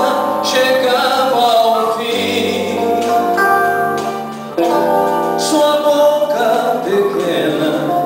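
A man sings a slow, sad song into a microphone, with acoustic guitars accompanying him. There is a short break between phrases about four and a half seconds in.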